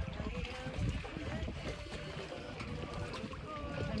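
Wind rumbling on the microphone over the sound of water lapping around the float dock.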